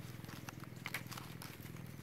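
Baby long-tailed macaques wrestling on dry leaves and twigs, with a few sharp crackles about halfway through, over a low, rapidly pulsing rumble.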